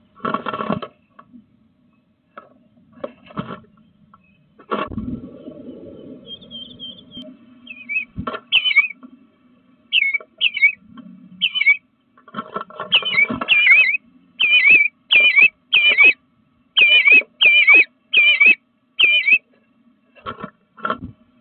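Eastern bluebird calling a short, wavering note over and over, the calls starting about eight seconds in and coming more often, roughly two a second, towards the end. Earlier there are sharp taps and a scratchy rustle of a bird's feet and wings against the wooden nest box.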